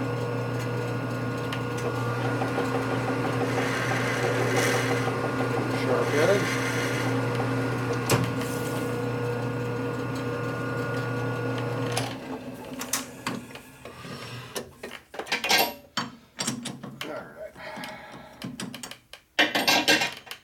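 Metal lathe running with a steady hum while a part is turned down in the chuck; the lathe shuts off suddenly about twelve seconds in, followed by scattered clicks and clatter of the part being handled.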